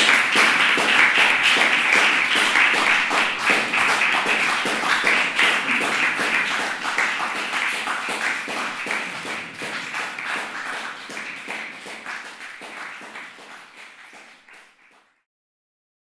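A small audience applauding. The clapping starts loud, slowly dies away and cuts to silence near the end.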